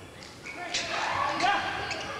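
A basketball bouncing on a hardwood court during play: two sharp bounces under a second apart, ringing in a large hall over crowd voices.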